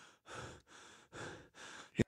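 A cartoon character's voice breathing heavily and queasily, four quiet breaths in quick succession, in the wake of a bout of vomiting.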